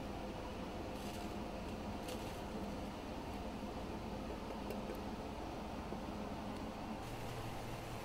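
Faint, steady background hum and hiss, with a few light clicks.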